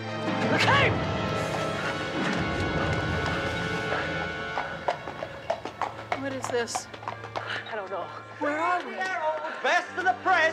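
A loud rushing burst with a high cry in it, about half a second in, fading over the next few seconds; then a busy street: horse hooves clip-clopping on cobbles and indistinct voices of passers-by.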